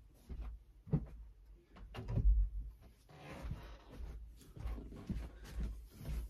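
Scattered knocks and thumps of a room door being dealt with after a cat pushed it open, together with the rumble of moving about. The loudest thump comes about two seconds in.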